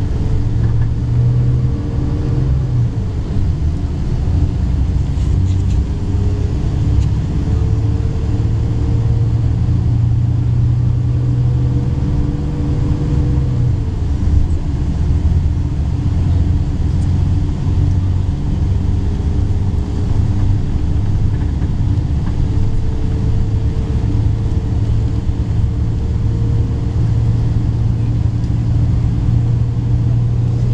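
Bus engine and road rumble heard from inside a moving long-distance coach, a steady drone whose pitch drops about halfway through and rises again later as the speed changes.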